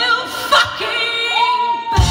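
Women's voices singing unaccompanied: a held harmony note ends at the start, a short sharp knock comes about half a second in, then a single female voice slides up into a long held high note.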